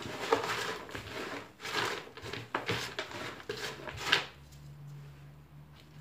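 Orchid potting mix of bark chips being stirred by hand in a plastic basin, the chips rustling and scraping against each other and the basin in uneven bursts; it stops about four seconds in.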